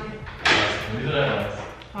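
A woman huffing air out through her mouth around a too-hot mouthful of food. A sudden breathy blow comes about half a second in and fades over about a second.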